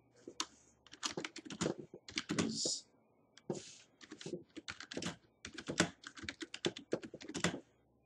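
Typing on a computer keyboard: a fast run of key clicks in several bursts with short pauses between, stopping shortly before the end.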